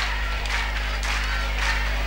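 A kirtan audience clapping in rhythm, roughly three claps a second, over a steady low electrical hum from the sound system.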